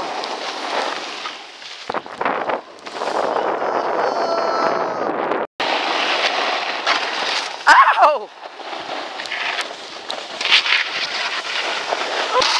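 Wind rushing over the microphone and a snowboard sliding and scraping on packed snow during a moving run, with a brief falling-pitch shout about eight seconds in.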